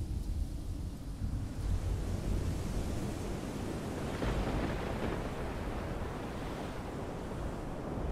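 Stormy sea ambience of waves and wind: a steady rushing noise that swells a little around the middle.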